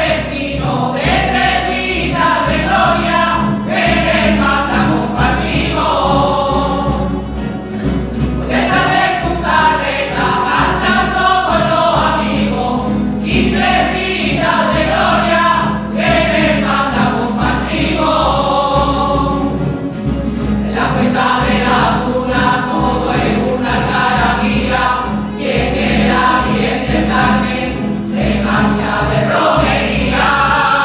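A mixed choir of men and women singing a rociero song together, accompanied by a strummed Spanish guitar, in phrases with short breaks for breath.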